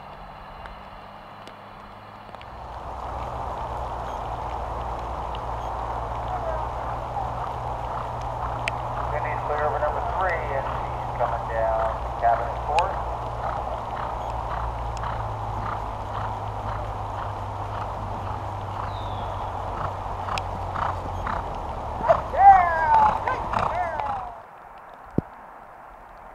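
A motor running steadily with a low hum, under muffled voices talking. The voices get loudest shortly before the sound cuts off abruptly near the end.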